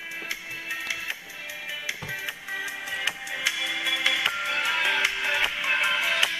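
Music with a beat leaking out of the ear cups of Bose QuietComfort 15 headphones played at full volume, heard thin with little bass. It grows somewhat louder about halfway through.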